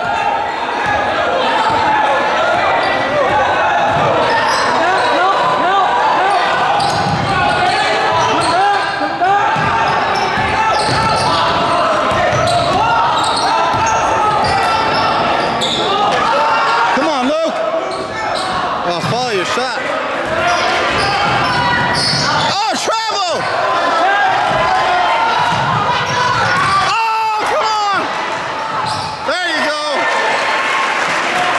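Basketball being dribbled on a hardwood gym floor during play, under a steady din of many overlapping voices from spectators and players, echoing in a large gymnasium.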